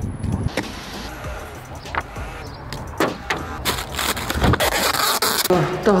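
Packing tape pulled off the roll and wrapped around a cardboard shoebox to seal it, with loud ripping strips of tape mostly in the second half, over quiet background music.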